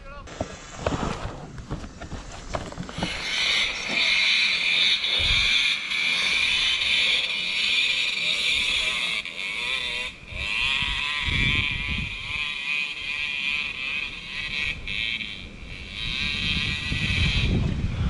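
Dirt bike engine running hard at high revs, the throttle rising and falling, starting about three seconds in.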